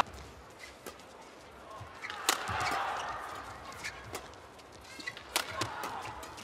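Badminton doubles rally: several sharp cracks of rackets hitting the shuttlecock, roughly a second apart, with brief shoe squeaks on the court over a low crowd murmur.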